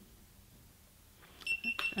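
A GoPro Hero3 Black camera's USB cable unplugged: a few small clicks, then a high electronic beep tone from the camera as it powers off, starting about one and a half seconds in.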